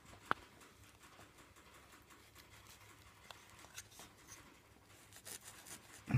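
Faint scratching of paintbrush bristles stroking paint along wooden door trim, with one sharp click just after it begins.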